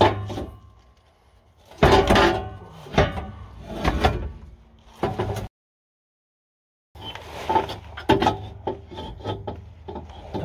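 Steel exhaust pipe scraping and knocking as it is forced up into place under a truck, in two rough stretches with a dead-silent gap of about a second and a half between them.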